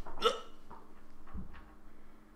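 A man's single short vocal noise just after the start, then a low, quiet stretch.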